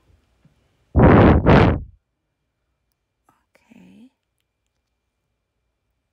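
Two short, loud puffs of breath close to the microphone, about half a second apart, then a faint murmur a couple of seconds later.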